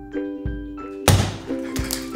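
Light background music with a mallet-percussion melody over a steady beat. About a second in comes one loud, sudden splat: a scoop of ice cream thrown against a wooden plank wall.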